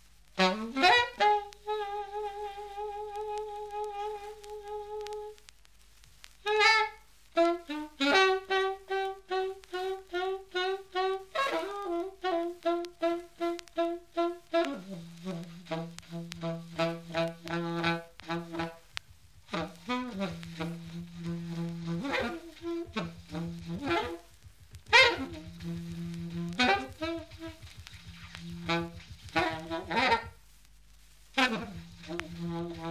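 A Grafton plastic alto saxophone playing an unaccompanied free-jazz line: a long note with vibrato, then phrases of short, separated notes with brief pauses between them.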